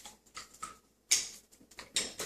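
Wire whisk beating a thick custard pie filling in a plastic mixing bowl, its wires clicking and tapping against the bowl in irregular strokes, the loudest a little past halfway.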